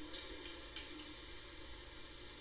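Beer pouring from a bar tap into a glass, heard faintly as a steady hiss with a couple of light ticks.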